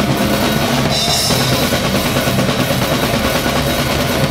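Metal band playing live, led by a loud drum kit: dense, fast kick and snare under distorted guitar and bass, with a cymbal crash about a second in.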